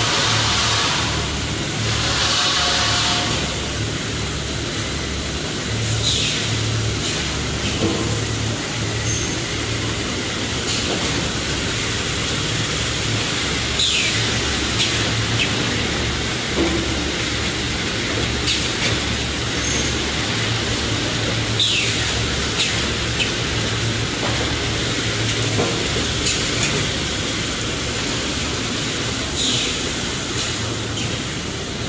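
Automatic carton folder gluer running: a steady low hum of motors and belt conveyors under a constant mechanical hiss as corrugated cardboard blanks are fed through. A brief high falling swish comes about every eight seconds.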